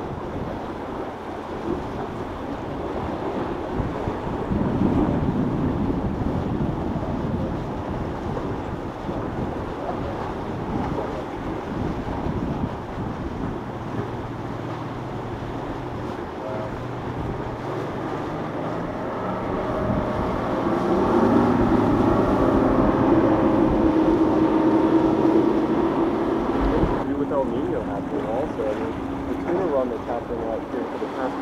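Boat engines running past, growing louder and holding a steady note for several seconds in the latter half before dropping off, over wind buffeting the microphone and the wash of waves.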